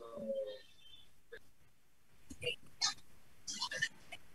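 Faint, broken speech over a video call: a short vocal sound at the start, then scattered brief voice fragments near the end.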